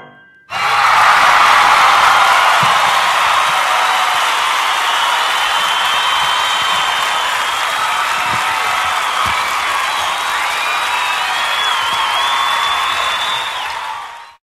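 Crowd cheering and applauding with whistles and whoops. It starts suddenly about half a second in, just after the last piano notes die away, and fades out at the end.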